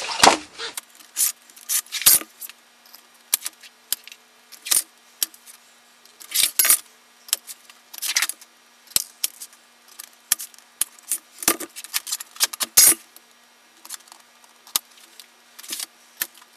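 A hand scribe scratching layout lines into sheet metal in short, irregular strokes, with sharp clicks of metal tools and the sheet being handled. A faint steady hum runs underneath.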